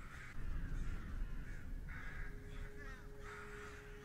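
Crows cawing, about five harsh caws spread across a few seconds, with a faint low steady tone coming in about halfway through.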